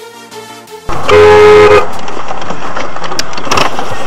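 Backing music cuts off about a second in, and a car horn sounds once, loud and lasting under a second. Steady road and engine noise follows, heard from inside a moving car.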